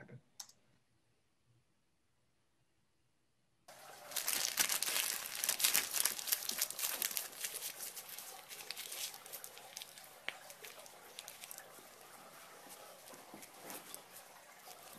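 After a few seconds of silence, a paper receipt is crinkled and crumpled by hand into a ball. The crackling is loudest at first and thins out, over a steady background hiss like a fountain running.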